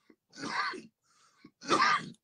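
A man clearing his throat twice in two short bursts about a second apart.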